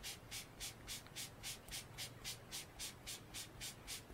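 Ink-blending tool with a foam pad rubbed in quick circles over cardstock, a soft, even scuffing at about four strokes a second as ink is blended on.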